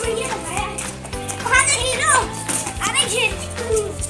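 Young children shouting and squealing at play in high, rising and falling voices, over background music.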